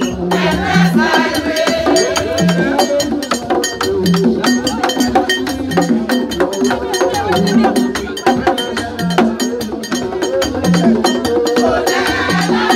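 Live Haitian Vodou ceremony music: rapid percussion with sharp clicking strikes and a rattle, under group voices singing, with a low note repeating about once a second.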